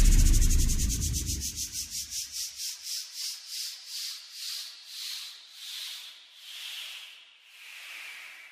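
The end of an electronic dance remix: the bass dies away in the first two seconds, leaving a pulsing noise sweep whose pulses slow from several a second to about one a second and drop in pitch as it fades out, a wind-down effect closing the track.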